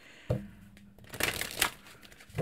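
A chakra oracle deck being shuffled by hand. A short tap comes first, then a quick flurry of card noise about a second and a half in.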